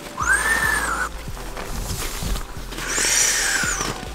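An Exped Schnozzel pump bag being squeezed to push air through the valve into an inflatable sleeping pad. There are two pushes, one near the start and one in the second half, each a whistling rush of air that rises and then falls in pitch.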